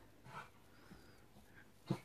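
Faint breathing from a dog, with one short soft sniff about half a second in.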